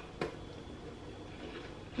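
Quiet chewing of a crunchy chocolate-coated biscuit, an original Tim Tam, with the mouth closed; one sharp crack a moment after the start.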